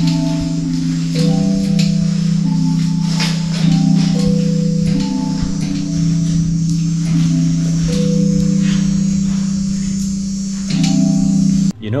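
The Great Stalacpipe Organ playing a slow melody: stalactites gently tapped to sound held, chime-like chords that change every second or so. It cuts off suddenly near the end.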